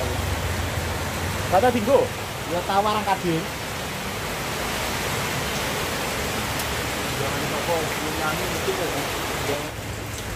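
Steady rushing noise with indistinct voices in the background, rising twice briefly, about two seconds in and again near the end.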